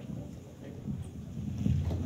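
Low rumble of wind buffeting the microphone, growing stronger near the end.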